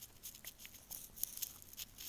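A quiet pause of room tone with a few faint, scattered clicks.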